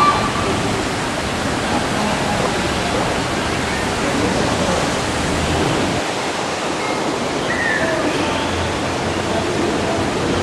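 Water cascading down a stepped concrete fountain channel: a steady, even rush with no breaks.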